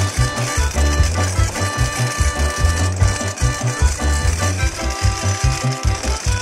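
Background music with a quick, pulsing bass line under held tones.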